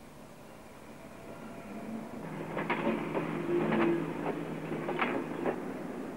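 Industrial machinery humming with repeated metallic clanks. It fades in and grows louder from about two seconds in.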